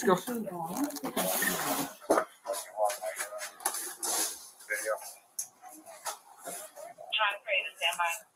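Indistinct, partly muffled talk, with scattered sharp clicks and knocks from handling.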